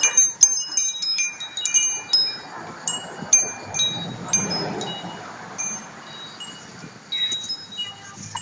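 Small metal chimes tinkling, struck irregularly: a quick flurry of short, high, clear rings in the first two seconds, then sparser ones that fade out one by one.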